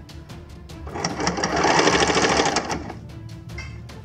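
Electric sewing machine stitching in one short run of about two seconds: a fast, even whir of the needle that starts about a second in and stops near the three-second mark.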